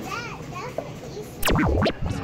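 A child's high-pitched voice calling out briefly, followed by a loud half-second sweeping sound whose pitch swings rapidly up and down, just before the cut.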